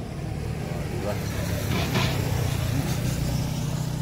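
A motor vehicle passing on the road, its engine drone building to a peak about two seconds in.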